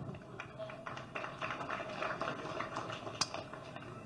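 Faint, scattered hand claps with a low murmur from a seated audience, the claps coming irregularly.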